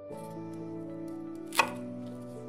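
A single sharp chop of a knife through a celery stalk onto a wooden cutting board, about a second and a half in, over background music with slow held notes.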